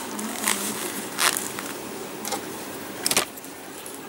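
A few short, sharp scraping clicks from handling a metal nail-stamping plate and a silicone stamper. The loudest comes about a second in, and a quick cluster of three comes near the end.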